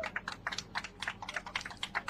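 Rapid, irregular clicking, many small sharp clicks each second with no pause.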